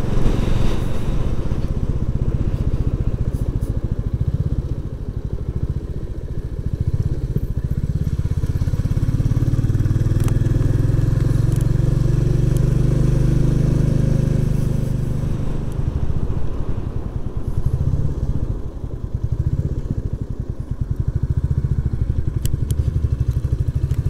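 Royal Enfield Classic 350's single-cylinder engine running as the bike is ridden, heard from the rider's seat. The engine note swells through the middle and eases off briefly about five seconds in and again near the end.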